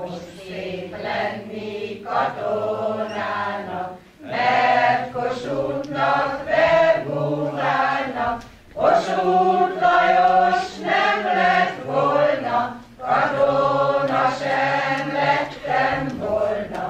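A mixed amateur choir, mostly older women's voices with a few men, singing unaccompanied. The song runs in phrases of about four seconds with brief breaths between them.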